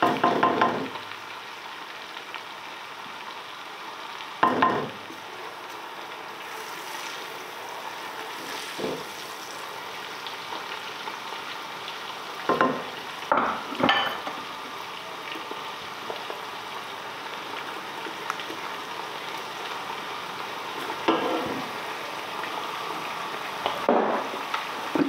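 Onion, garlic and tomato frying in oil in a large metal pot, a steady sizzle, with a spoon stirring and now and then scraping or knocking against the pot, about seven times.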